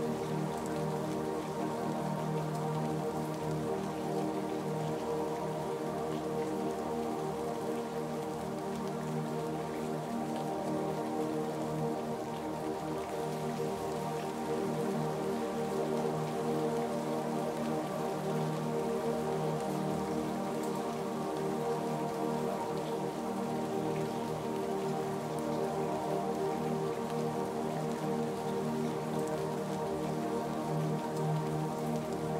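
Steady rainfall mixed with soft ambient music of long, held chords.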